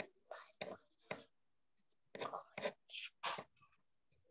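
Someone whispering in about seven short breathy bursts, heard over a video-call microphone.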